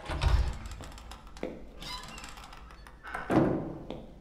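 A dull, heavy thud right at the start, then a few softer knocks and rustles, over faint background music.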